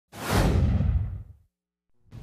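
A whoosh sound effect for an animated channel-logo intro. It swells in quickly and dies away over about a second, the hiss thinning from the top down as it fades.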